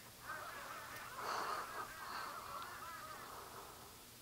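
A rapid string of honking, goose-like squawks from a cartoon soundtrack playing on a television, heard through its speaker. The squawks are loudest about a second in and die away before the end.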